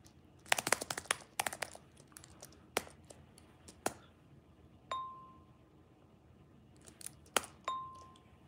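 Clicks from an iPad's on-screen keyboard as a short phrase is typed, followed by two short, clear dings about three seconds apart: the Copied clipboard app's sound for a clip being saved.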